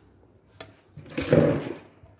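A brief rustling scrape about a second in, lasting under a second and fading out: handling noise as things are moved about beside the mini mist sprayer.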